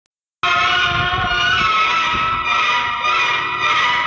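Music starts abruptly about half a second in: a loud, dense wash of many held notes with some low beats underneath.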